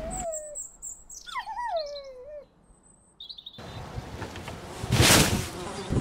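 Birds calling: a high thin whistle, then a few falling, wavering whistled notes. After that, outdoor street background comes up, with a loud rushing noise about five seconds in.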